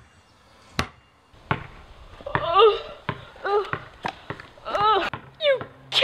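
A basketball bouncing on a concrete driveway, a sharp first bounce about a second in and a few lighter ones after. From about two seconds in, a boy gives high, wailing cries, one every second or so.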